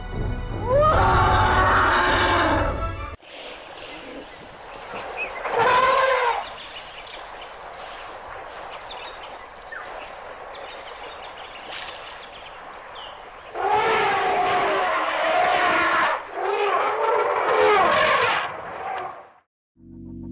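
African elephants trumpeting in loud, arching calls: a burst near the start, a single call about six seconds in, and a longer run of calls near the end.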